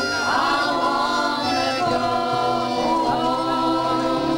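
A mixed group of voices singing a folk song together in harmony, holding long notes, with acoustic guitar accompaniment, performed live.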